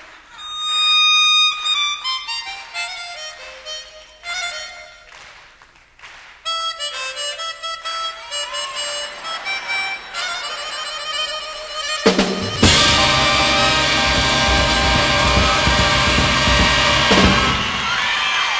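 Live harmonica solo in short, bright phrases with pauses between them. About twelve seconds in, the full band comes back in loud under the harmonica.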